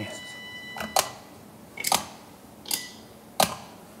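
Wooden shogi pieces clacking: pieces are set down sharply on the wooden board and the piece stand, giving four separate clicks less than a second apart.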